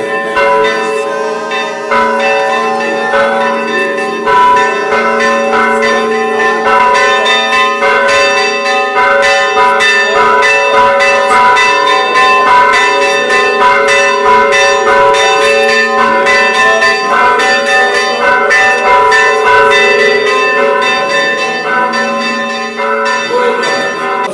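Several church bells ringing together in a continuous peal, with rapid strikes throughout over the lingering tones of the bells.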